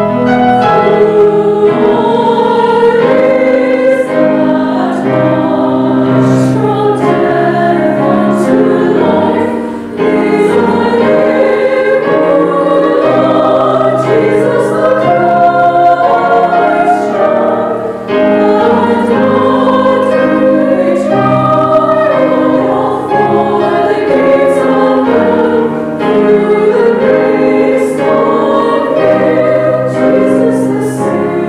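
Women's choir singing a choral carol in harmony with piano accompaniment. The phrases break briefly about ten seconds in and again about eighteen seconds in.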